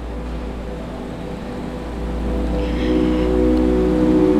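Organ holding sustained chords, growing louder in the second half as another note comes in.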